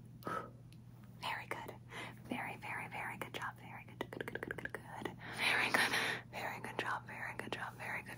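A short puff of breath blowing out a lighter flame, then soft close-up whispering with many small clicks.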